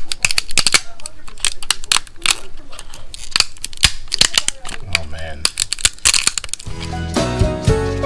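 PLA tree supports being snapped and picked off a 3D print by hand: a quick run of sharp plastic cracks and clicks. Background music with a beat comes in near the end.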